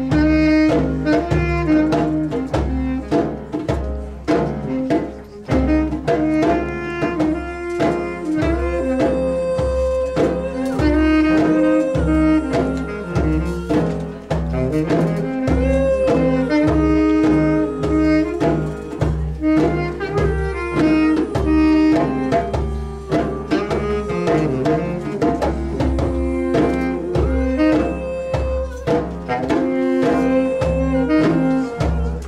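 Live instrumental music from a tenor saxophone, piano and djembe trio: the sax holds a melody over piano and a steady drum beat.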